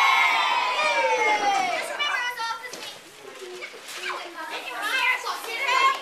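A group of children's voices shouting together, loudest in the first two seconds, then scattered chatter and calls that grow louder again near the end.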